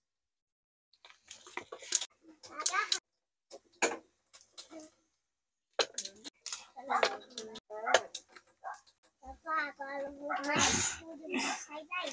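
Soft speech and a young child's voice, with a few light clicks in between; silent for about the first second.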